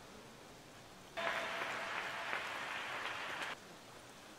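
Audience applause that starts suddenly about a second in and is cut off abruptly after about two and a half seconds.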